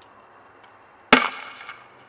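S-Thunder 40mm gas-powered foam-ball long shell fired from a grenade launcher: one sharp, loud bang about a second in, with a short ringing tail.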